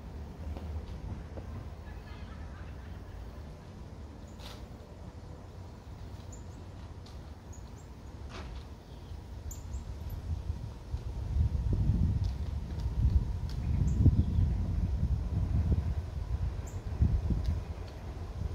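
Outdoor background noise: a low rumble that swells louder and more uneven about two-thirds of the way through, with a few faint, short high chirps.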